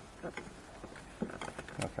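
A few faint, scattered clicks and ticks of a plastic dash trim panel and its clips being worked loose with a metal pry tool.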